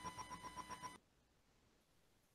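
A faint rapid beeping, about seven short beeps a second at one steady pitch, which cuts off suddenly about a second in.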